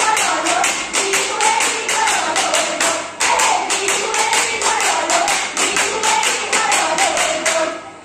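Women's group singing a Jeng Bihu song over fast, sharp, rhythmic clapping, about four to five claps a second. The song and clapping stop just before the end.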